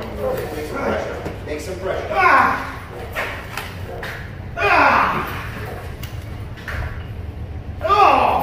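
A man gives short, falling-pitched shouts, about 2 s in, about 5 s in and again at the end, over scuffling and thuds as a young protection dog grips and fights a hard bite sleeve.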